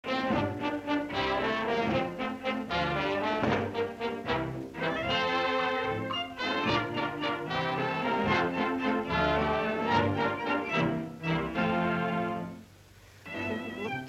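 Brass-led orchestral title music for a cartoon, breaking off briefly about a second before the end and then starting again.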